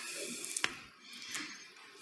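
Quiet room sound in a church, a faint hiss with a couple of soft clicks.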